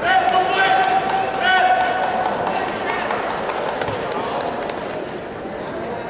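Voices calling out in a large sports hall, over a steady held tone that lasts about two seconds and then stops, followed by a few short sharp knocks in the middle.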